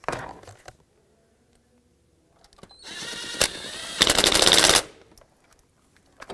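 Cordless impact wrench snugging a bolt down. The motor whirs for about a second, then hammers rapidly for just under a second as the bolt seats, and stops suddenly.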